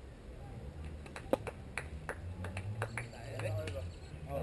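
A quick, irregular run of about ten sharp taps over two seconds, followed by a brief man's voice near the end.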